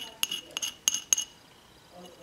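Small metal spatula clinking against a hard mixing surface: five or six sharp, ringing clicks in the first second or so.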